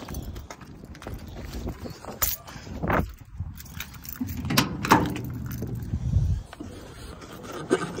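Sharp clicks and knocks of a truck's cab door latch and door being handled and opened, with a low hum lasting a couple of seconds in the middle.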